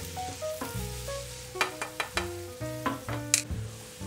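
Chopped onions sizzling gently in hot oil in a frying pan, with a spatula stirring and scraping against the pan in a few sharp clicks through the middle. Soft background music plays a slow run of held notes under it.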